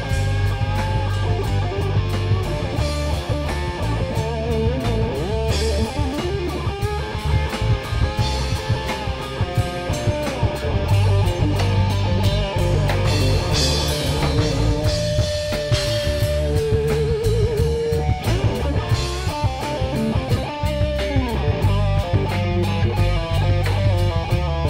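Live rock band: a distorted electric guitar playing a lead line with bent notes and a held, wavering vibrato note about two-thirds of the way through, over a steady drum-kit beat and heavy bass.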